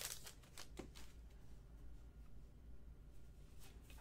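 Faint handling of paper trading cards, with a few light clicks and rustles in the first second, then near quiet over a low steady room hum.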